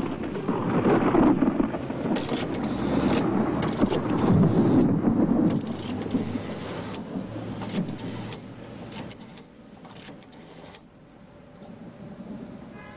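A heavy vehicle rumbling and rattling past, loudest in the first few seconds, then fading away over the last few seconds.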